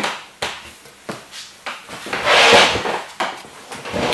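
Handling noise: a few light knocks and a scraping rub of objects being moved about on a work surface.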